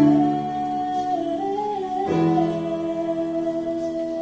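A young female singer holding long sung notes through a microphone and PA, over a slow instrumental backing track; the melody line wavers for about two seconds, then settles on one steady held note.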